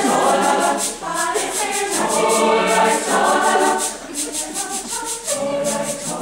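A mixed-voice choir singing in full, in phrases with brief dips in level about a second in and near four seconds in, over a steady shaker rhythm of about four to five strokes a second.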